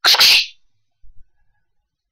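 A man's short hissing mouth sound, a breathy 'kssh' lasting about half a second, followed by two faint low knocks about a second in.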